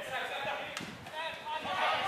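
Several voices shouting and calling during Australian rules football play, growing louder towards the end, with a single sharp thud about three-quarters of a second in.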